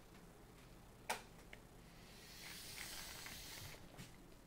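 Steel tape measure with a magnetic hook being drawn out to a distant mark: a faint click about a second in, then a soft hiss of the blade sliding out of its case for about a second and a half.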